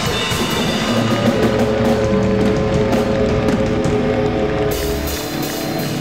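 Rock band music: drum kit and electric guitars. Through the middle a held chord rings while the cymbals fall away, and they come back in near the end.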